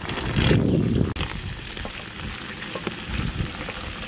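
Green peas going into a large pot of water: a loud rush of splashing in the first second, then softer water sounds.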